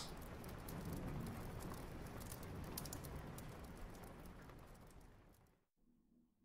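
Rain ambience: a steady hiss of rainfall with scattered pattering drops, fading out gradually over about five seconds.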